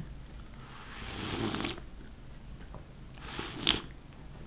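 A man's breathy exhales close to the microphone: a rush of air about a second long, then a shorter one near the end that finishes sharply.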